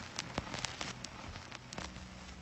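Faint, irregular crackling clicks over a faint low hum.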